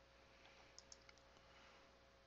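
Near silence with a few faint, short clicks about a second in.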